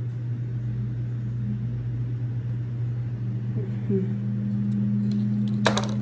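A steady low hum, with a brief faint voice in the middle and one sharp click near the end.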